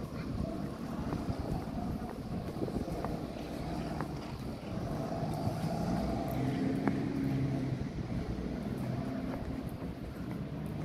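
Bus engines running close by, a steady low drone that swells slightly about six to eight seconds in.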